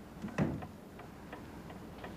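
A clock ticking quietly, about three ticks a second, with a single thump about half a second in.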